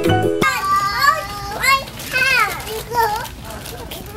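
Music cuts off about half a second in, then toddlers squeal and babble in high, swooping voices.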